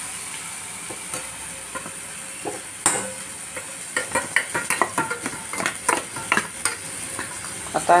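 Tomato and green chilli masala sizzling in oil in a kadhai, a steady hiss. From about three seconds in, a steel spatula stirring and scraping against the pan makes a quick run of clicks and knocks.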